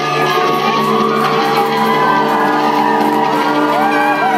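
Live concert music, a steady held chord with no beat, with the audience shouting and whooping over it.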